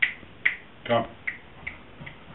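Fingers snapping in a steady rhythm, about two snaps a second, getting fainter toward the end: snapping to call a dog over.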